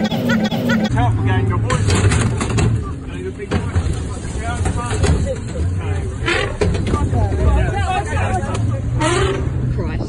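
Open safari vehicle's engine running steadily under the overlapping, excited voices of its passengers, after about a second of background music that cuts off.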